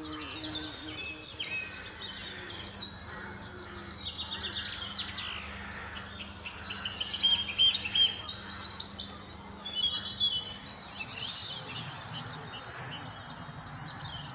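A chorus of songbirds singing over one another, including a chaffinch and a song thrush, with phrases repeated several times. Under the birds, a low steady bumblebee buzz runs until a few seconds before the end.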